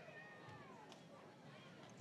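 Near silence: faint ballpark background, with one faint high call that falls in pitch over about half a second shortly after the start.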